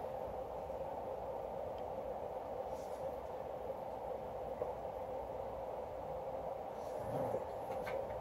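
Steady room background hum with a faint hiss, unchanging throughout, with no distinct clicks or other events standing out.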